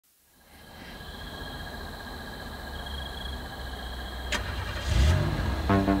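Car engine sound effect opening an electronic pop track: a low steady engine rumble fades in, a sharp click comes about four seconds in, and the engine revs up just before five seconds. A rhythmic electronic beat starts near the end.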